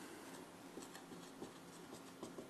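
Faint scratching strokes of a marker writing on a whiteboard.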